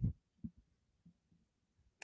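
Near silence in a pause between spoken sentences: a word trails off at the very start, and one faint low thump comes about half a second in.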